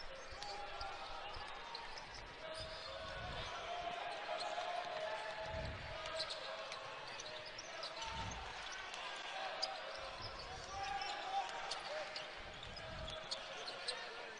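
Basketball game ambience on a hardwood court: the ball being dribbled, with a low murmur of crowd voices underneath and a few soft thumps.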